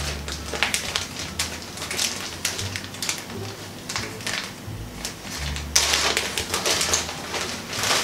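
Clear plastic packaging bag crinkling and rustling in the hands as it is opened, with irregular crackles that grow louder for a stretch past the middle.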